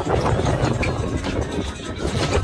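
Boat's outboard motor idling as a steady low rumble, mixed with wind buffeting the microphone.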